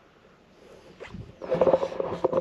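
Near silence for about a second, then a low person's voice comes in about a second and a half in.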